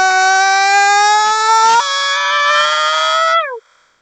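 A man's voice holding one long 'ah' that slides slowly upward in pitch, then jumps suddenly higher about two seconds in, a deliberate shift into the next vocal register, and drops away with a short downward slide near the end.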